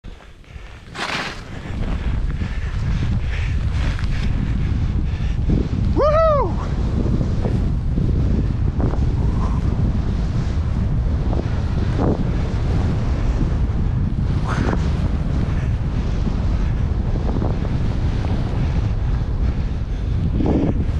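Wind buffeting the microphone of a skier's camera during a fast powder descent, with skis hissing through the snow. About six seconds in, a person gives one short whoop that rises and falls in pitch.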